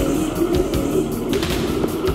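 Background music with held notes over a run of low thuds.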